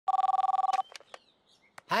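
Cordless telephone ringing: an electronic two-tone trill, pulsing fast, that lasts under a second and cuts off. A few sharp clicks follow as the handset is picked up.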